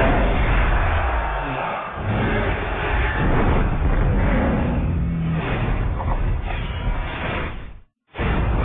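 Film action sound effects: a loud, dense mix of crashing impacts over a heavy low rumble, cutting off suddenly just before the end.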